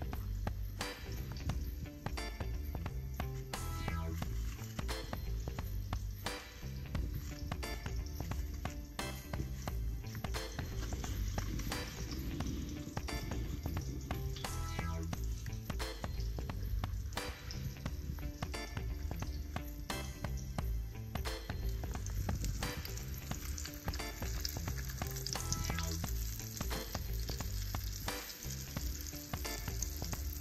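Breaded sheepshead fillets sizzling steadily as they shallow-fry in olive oil in a pan, with scattered sharp clicks of a fork against the plate and pan.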